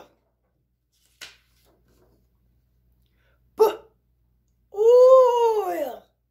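A high-pitched voice sounding out the word 'boil': a short 'b' about three and a half seconds in, then a long, drawn-out 'oi' near the end that rises and then falls in pitch.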